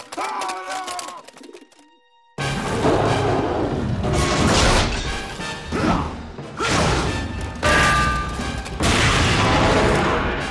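Cartoon action soundtrack: a short run of gliding, pitched calls for the first couple of seconds, then a sudden cut-in of loud dramatic music mixed with crashing and smashing impacts that surge several times.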